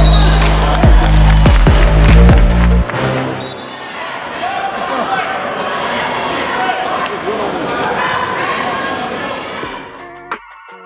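Music with heavy bass and sharp beats that cuts off suddenly about three seconds in. It gives way to the noise of a gym crowd at a basketball game, many voices talking and calling out at once, which fades out near the end.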